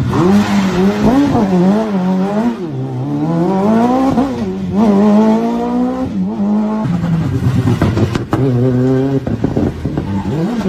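Rally car engines revving hard on a stage, the pitch swooping up and down over and over with throttle and gear changes. A few sharp cracks come about eight seconds in.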